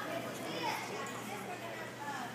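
Background chatter of young girls' voices in a large gym.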